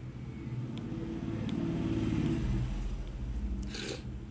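Low rumble of a passing motor vehicle, swelling to a peak around the middle and fading again.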